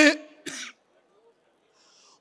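A man's voice through a podium microphone finishes a word. About half a second in there is a brief cough-like huff, then a pause with a faint in-breath near the end.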